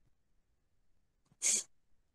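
A single short, hissy breath noise from a person about one and a half seconds in, with near silence around it.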